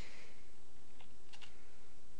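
A few light keystrokes on a computer keyboard, spaced out, over a steady background hiss.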